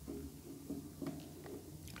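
Faint handling noise of a small foam microphone windscreen and a lavalier mic being worked between the fingers: soft squishing with a few small clicks.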